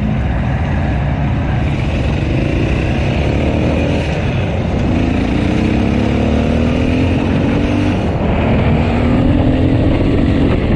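Motorcycle engine under hard acceleration, its pitch climbing in each gear and dropping at two upshifts, about halfway through and near the end.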